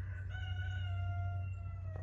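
A rooster crowing once, one long call lasting nearly two seconds and sinking slightly in pitch, over a steady low rumble.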